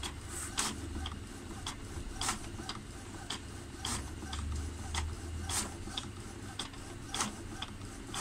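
Epson L120 inkjet printer printing a page. A low motor hum swells and fades as the mechanism works, with sharp clicks at irregular intervals of about half a second to a second as the paper is fed forward.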